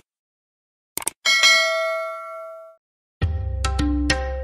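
Subscribe-button animation sound effect: two quick mouse clicks, then a bright notification-bell ding that rings out and fades over about a second and a half. Music with drum strokes starts near the end.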